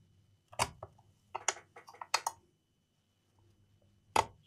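A few light knocks and clicks as a laptop is picked up and turned over on a desk: one about half a second in, then a quick cluster of taps around one and a half to two seconds.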